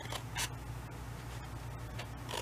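Scissors snipping through a sheet of patterned paper: one short, crisp cut about half a second in.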